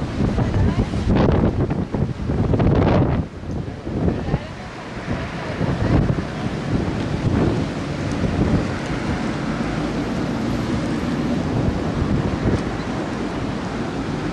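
Wind buffeting the microphone in gusts over the steady wash of sea waves on the shore; the gusts are strongest in the first few seconds, then the sound settles into a steadier rush.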